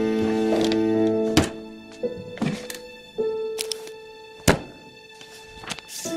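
Soft film-score music with held notes, broken by about six sharp wooden thunks and knocks as a desk drawer is pulled open and a notebook is set down on the desk. The loudest knock comes about four and a half seconds in.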